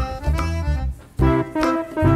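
Background music: a keyboard instrument, organ- or electric-piano-like, playing a bouncy tune with notes about every half second over a bass line.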